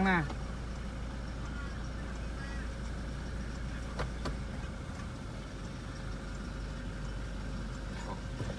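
Toyota Fortuner's 2.4-litre four-cylinder turbo-diesel idling, heard from inside the cabin as a steady low rumble that eases a little about five seconds in. Two sharp clicks come about four seconds in.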